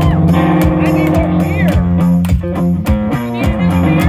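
Electric ammo-can guitar played through an amplifier, low sustained notes over a regular percussive beat, with some sliding pitches about halfway through.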